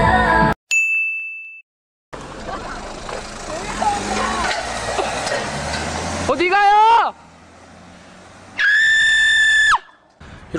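Pop music cuts off and a short clear chime rings, then after a second of silence comes outdoor night noise as a car drives away. About six seconds in a person yells, and near the end a long steady high-pitched tone is held for about a second before stopping abruptly.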